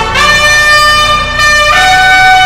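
Trumpet playing a long held note, stepping down to a lower note near the end, over low musical accompaniment.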